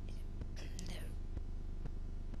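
A pause in speech: faint breathy mouth sounds from a man at a desk microphone, over a steady low electrical hum from the sound system.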